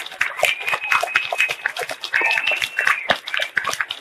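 Audience applauding, with two long, high-pitched calls from the crowd held over the clapping.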